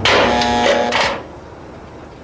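Steel barred gate being slid open: a loud metallic rattle and scrape with a few ringing tones, lasting just over a second and then stopping abruptly.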